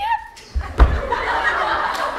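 A thump just under a second in, then laughter from many people in the audience breaking out and carrying on.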